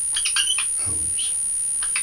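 Dry-erase marker squeaking on a whiteboard in several short strokes as figures are written. A constant high-pitched whine runs underneath.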